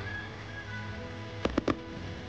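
Fireworks going off: three sharp bangs in quick succession near the end, over steady background music.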